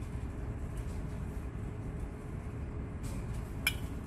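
Steady low background rumble, with one light clink of glassware near the end as the glass graduated cylinder is lifted from the separatory funnel.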